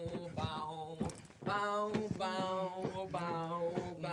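Music with a man singing long held notes.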